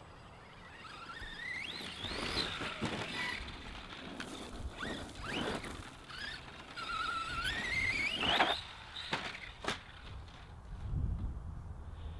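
Brushless electric motor of an Arrma Outcast 4S BLX 1/10 RC stunt truck whining as it accelerates in bursts, the whine rising sharply in pitch about a second in and again for a longer run about seven seconds in. Scattered knocks and rattles come from the truck bouncing over the grass.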